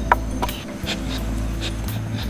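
Peccaries in a pen making low animal noises that could be mistaken for a person's, with a few short clicks.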